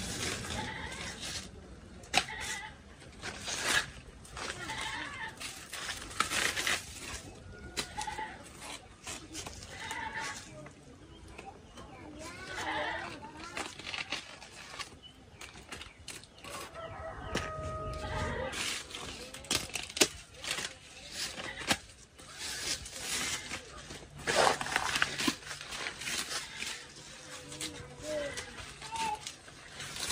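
Irregular strokes of a knife cutting and scraping old dry sheaths off banana plant stems, with crisp cuts and rustles of fibrous leaf material. Chickens are calling in the background.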